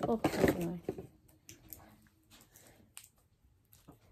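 A short 'oh' over a burst of rustling as something is swept close to the microphone in the first second, then faint scattered clicks and rustles of small items being handled.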